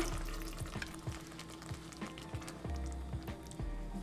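Water pouring into thick tomato sauce in a pot, ending in the first second, then the sauce simmering with small irregular pops and sizzles. Faint background music runs underneath.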